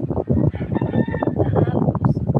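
A rooster crows once in the background, a single call of a bit over a second starting about half a second in, over a woman talking.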